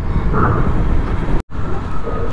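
Motorcycle riding noise: the engine running under a steady rumble of wind and road on the rider's microphone. It drops out for an instant about one and a half seconds in.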